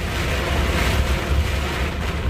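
Heavy rain beating on a truck cab's windscreen and roof, over the steady low drone of the engine and tyres on the flooded motorway, heard from inside the cab.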